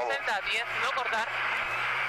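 Rally car engine running at speed on a gravel stage, heard through the onboard camera, with a voice talking over it.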